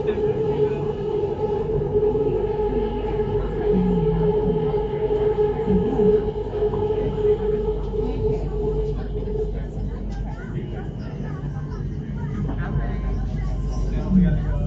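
BTS Skytrain car running along the elevated track, heard from inside the car: a steady whine over the rumble of the running train. The whine stops about two-thirds of the way through while the rumble goes on.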